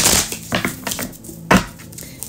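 A tarot deck being shuffled by hand, with the cards slapping and sliding against one another in a few short bursts about half a second apart.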